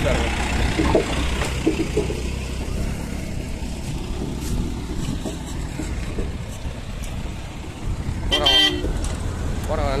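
Steady low rumble of seaside wind and surf on the phone's microphone. About eight seconds in there is one short pitched toot, like a horn.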